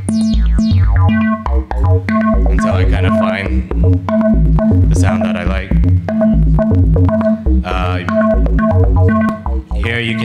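A looping dance-track pattern from a software synthesizer in Reason: a repeating low bass line under short pitched synth notes. Bright resonant filter sweeps rise and fall a few times as the filter cutoff and resonance are turned.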